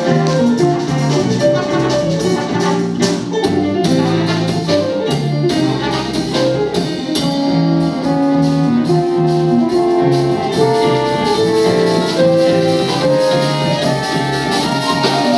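Live jazz ensemble playing: trumpet and trombone play a melody together over upright double bass, hollow-body electric guitar and a drum kit.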